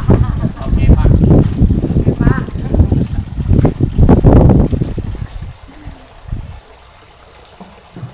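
Low, irregular buffeting noise on the camera's microphone, with a few faint voices. It dies away after about five seconds to a quiet background.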